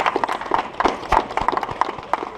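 Small group of people clapping: scattered, uneven applause made of many sharp hand-claps.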